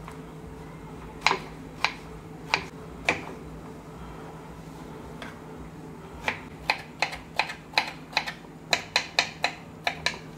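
Kitchen knife chopping cucumber on a wooden cutting board. There are four spaced chops in the first few seconds, then a quicker run of about ten chops, roughly two or three a second, in the second half. A low steady hum runs underneath.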